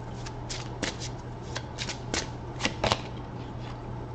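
A deck of tarot cards being shuffled by hand: a run of short, uneven card flicks and slaps, about three a second.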